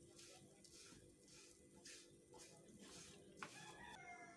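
Faint, near-silent stirring: a silicone spatula scraping a crumbly desiccated-coconut mixture around a nonstick pan in soft strokes about twice a second, with the flame off.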